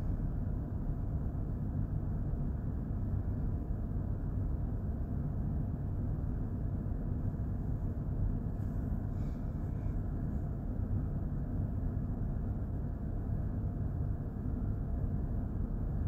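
Steady low mechanical rumble of running machinery, even in level throughout, with no distinct knocks or clicks and a faint brief hiss about nine seconds in.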